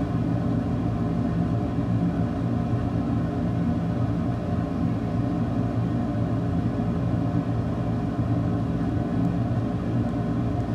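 A steady low machine hum that holds the same pitch and level throughout.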